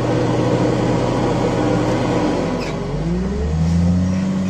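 Loader's diesel engine running steadily, then revving up about three seconds in and holding the higher pitch as the hydraulics work the load.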